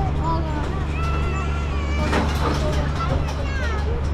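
Tractor engine running steadily as it pulls a hay-ride wagon, with riders' voices over it and a brief knock about two seconds in.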